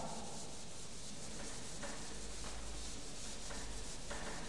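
Blackboard duster rubbing chalk off a blackboard: quiet wiping strokes, a few of them faintly marked.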